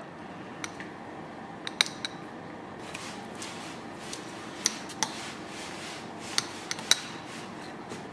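A drink being sipped through a straw from a lidded glass jar: quiet, with several light, sharp clicks and taps of glass, lid and straw as the jar is handled.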